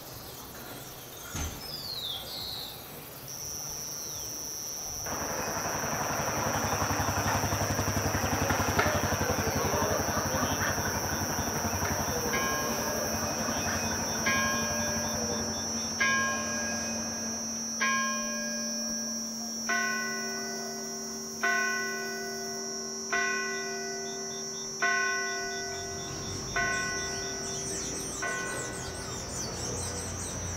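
A church bell tolling slowly, about ten strokes roughly one every second and three quarters, each ringing out and fading. Under it runs a steady high-pitched drone.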